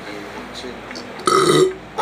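A man burping loudly once, about a second and a quarter in, lasting about half a second.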